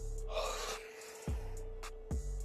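Background music with deep bass-drum hits about once a second, and a short breathy gasp from a person about half a second in.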